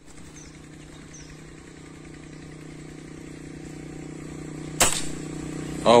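A motor vehicle's engine hums steadily and grows gradually louder as it draws nearer. Nearly five seconds in comes a single sharp crack, a hunting shot.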